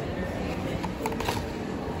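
A cardboard fast-food box being opened and handled, with short paper rustles and crinkles about a second in, over faint background chatter.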